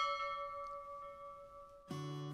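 A single bell-like chime struck once, ringing on and slowly fading. Strummed guitar music starts near the end.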